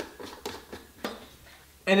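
A lid being screwed onto a glass mason jar: a few light clicks and scrapes of the cap on the jar.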